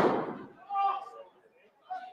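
A heavy thud from the wrestling ring right at the start, ringing out in the hall for about half a second, followed by faint shouts from the crowd.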